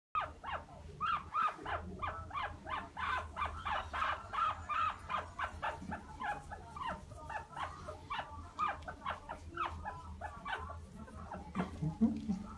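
Guinea pig squeaking over and over in short pitched calls, about three a second, while being bathed and rubbed with soap.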